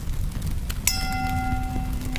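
Subscribe-button animation sound effects: a click, then a bell-like chime about a second in that rings on for about a second, over a steady low rumble.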